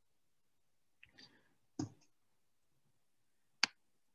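Mostly quiet pause with a brief spoken 'so' about two seconds in, then a single sharp click near the end.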